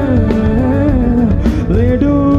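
A male vocalist singing live into a microphone, a sustained melodic line that slides and bends in ornamented turns and dips lower near the end, over band accompaniment with steady low drums and bass.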